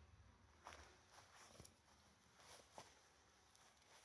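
Near silence, with a few faint soft rustles.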